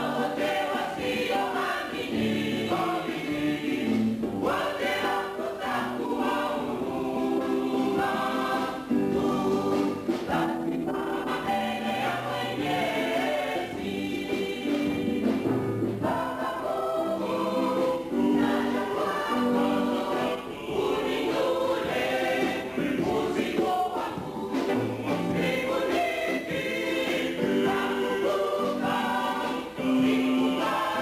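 A church choir singing a hymn, many voices together on held notes without a break.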